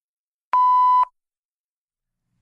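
A single loud, steady electronic beep, one pure tone lasting about half a second, starting about half a second in and cutting off sharply.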